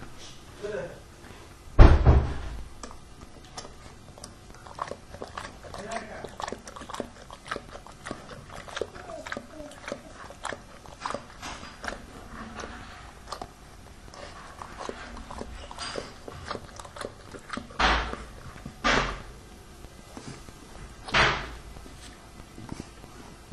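Dog lapping water from a plastic bowl: a long run of small, quick wet clicks. A loud thump comes about two seconds in, and a few softer thumps near the end.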